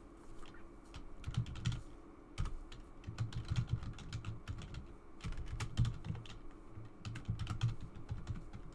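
Typing on a computer keyboard: irregular runs of key clicks broken by short pauses.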